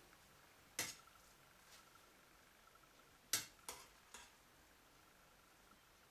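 Near-quiet room with a few short, sharp clinks of a utensil against a stainless steel pot: one about a second in, then three in quick succession around three to four seconds in, as cooked plov rice is dug through to lift out the garlic head.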